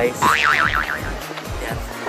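Background music with a cartoon 'boing' sound effect: a high, wobbling tone that swings up and down several times for about half a second, just after the start.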